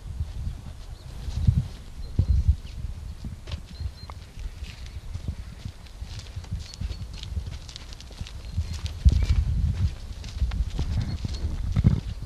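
Footsteps of two people walking on a gravel path, a run of short crunching steps, over a heavy uneven rumble of wind buffeting the camera's microphone that grows stronger near the end.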